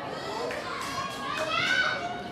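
Several high-pitched voices shouting and calling out over one another, loudest about one and a half seconds in.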